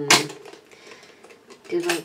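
A woman's drawn-out 'mm' ends in a short, loud breath just after the start. Faint handling sounds with light clicks follow as a tub of body butter is handled, and her speech starts again near the end.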